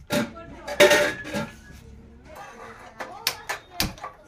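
Aluminium and steel cooking pots clanking as they are handled and set on a gas stove, loudest about a second in with a brief metallic ring. A few sharp clicks follow near the end.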